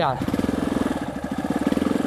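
Yamaha Lander motorcycle's single-cylinder four-stroke engine running steadily at low revs, an even, rapid pulse of firing strokes.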